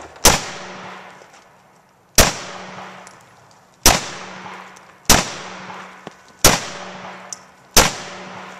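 Semi-automatic pistol fired six single shots, spaced about one and a half seconds apart, each shot followed by a fading echo.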